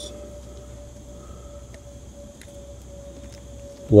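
Quiet background: a faint, steady single-pitch hum with a low rumble underneath and a few very faint ticks, with no distinct event.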